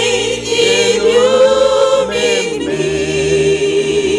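A small group of voices sings a slow hymn together through microphones, moving between a few long-held notes and ending on a sustained one.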